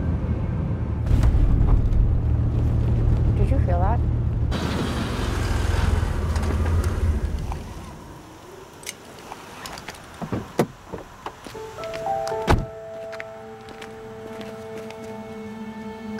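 A car running with a low road rumble that ends a little past halfway as it comes to a stop. It is followed by several clicks and knocks, the loudest a heavy thunk near the end, over film score music.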